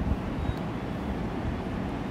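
Steady background noise, strongest in the low range, with no distinct events.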